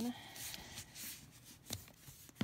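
Quiet rustling of a satin ribbon and cardboard gift box being handled, with one sharp tap near the end.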